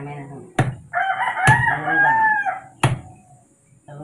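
A machete chops into the husk of a young coconut in three sharp strikes about a second apart. A rooster crows once, starting about a second in and lasting over a second, over the strikes.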